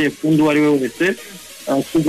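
A voice in drawn-out, sing-song syllables, with a faint hiss behind it.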